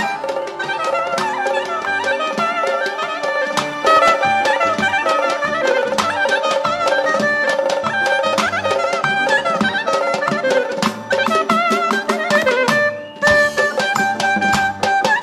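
Traditional folk dance music: a reed wind instrument playing a fast, ornamented melody over a steady hand-drum beat, with a brief drop just before the end.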